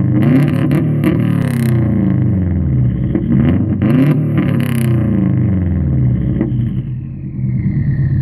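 2003 Subaru WRX's turbocharged flat-four with a straight-piped exhaust held on launch control at a standstill: the revs bounce up and down against the limit with sharp exhaust cracks. After about five seconds the revs drop and run steadier, with a falling whine near the end.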